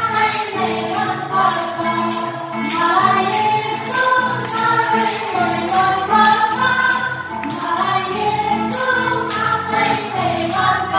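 Female vocal group singing a Nepali Christian song into microphones over a steady percussion beat of about two strikes a second.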